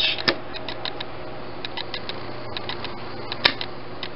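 A small 12-volt PC fan switched on and spinning under a steady low background, overlaid by quick, irregular clicking from a camera's auto-focus. A sharper single click comes about a third of a second in, and another near the end.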